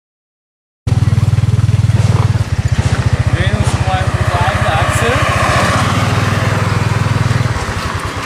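Small motorbike engine of a motorbike tuk tuk, pulling its passenger trailer and running steadily under way with a fast, even pulse. It comes in suddenly about a second in, after a moment of silence.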